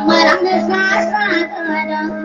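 Maranao dayunday music: a high voice sings a bending, ornamented line over plucked string accompaniment and a steady low drone note.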